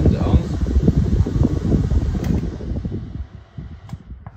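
Desk fans running, their airflow buffeting the microphone in a low, gusty rumble. The noise dies away over the last second and a half, with a sharp click just before the end.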